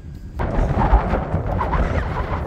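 Wind buffeting the microphone: a heavy low rumble, joined about half a second in by a louder rushing noise that holds steady.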